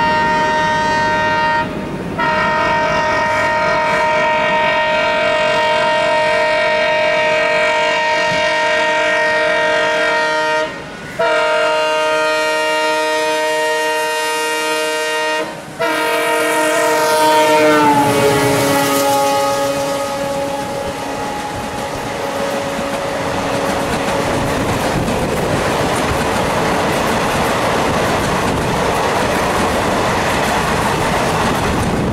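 An Indian Railways WDM-3A diesel locomotive's multi-tone air horn sounds almost continuously as it approaches, with three short breaks. About 18 s in its pitch drops as the locomotive passes and the horn fades. The passenger coaches then rush past, with the clickety-clack of wheels over the rail joints.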